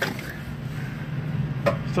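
A steady, low engine hum, as of a truck idling, with a man's voice starting near the end.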